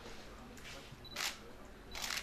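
A single camera shutter click about a second in, with a brief faint beep just before it, as a group photo is taken.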